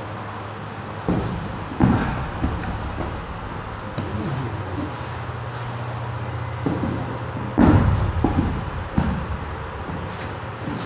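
Aikido hip throws (koshinage): a thrown partner lands on the tatami mats with heavy thuds, the first about two seconds in and the loudest about three-quarters of the way through, with scuffing of feet and uniforms on the mat between. A low steady hum runs beneath.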